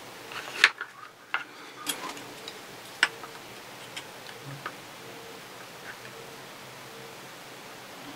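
Handling noise from plastic parts: a few short, sharp clicks and taps as a white plastic suitcase wheel is fitted into its plastic housing and a steel caliper is set against it, spaced irregularly over the first five seconds, then only a faint steady hiss.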